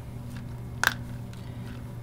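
A steady low hum throughout, with one sharp, light click a little under a second in as plastic microcentrifuge tubes are handled in their rack.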